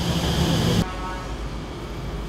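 Street traffic noise, a steady wash of passing vehicles. It drops to a quieter, even hum a little under a second in.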